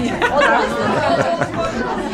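Several voices talking over one another: overlapping conversational chatter.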